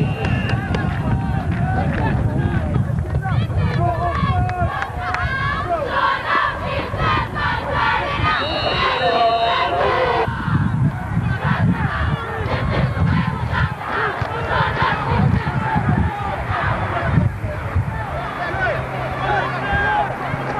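Football crowd of spectators and sideline players shouting and cheering, many voices overlapping.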